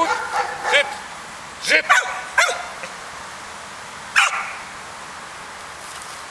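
Entlebucher mountain dog barking in short sharp barks: a quick group of about three about two seconds in, then one more about four seconds in.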